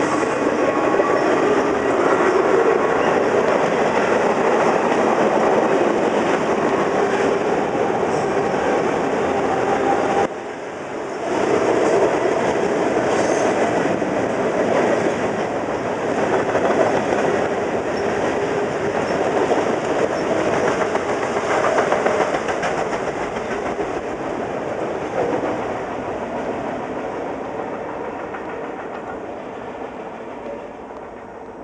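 Freight train of tank cars and covered hoppers rolling past, a steady loud noise of steel wheels on the rails. There is a brief dip about ten seconds in, and the sound fades away over the last several seconds as the end of the train recedes.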